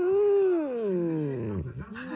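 Husky-malamute cross humming with its mouth closed: a drawn-out "hmmmm" that swells briefly, then slides slowly down in pitch, with a short dip and a fresh hum starting near the end.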